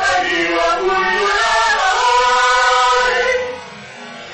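Vocal trio singing a held phrase together over an orchestral accompaniment, the music dropping away about three and a half seconds in.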